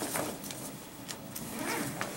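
Scattered rustling and light clicks and knocks, with a faint murmur of voices near the end.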